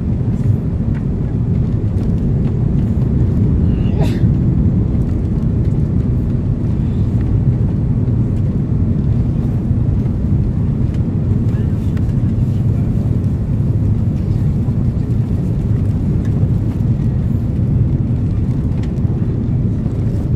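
Steady low rumble inside the cabin of an Airbus A330-300 on final approach: its Rolls-Royce Trent 772B engines running at approach power, with airflow over the extended flaps.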